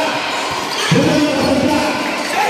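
A basketball bouncing on a hard court amid crowd noise, with a loud shout about a second in.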